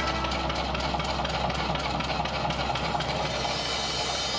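Accompaniment music for a contemporary dance piece: a steady low drone under a dense hiss-like wash with faint held tones, no clear beat.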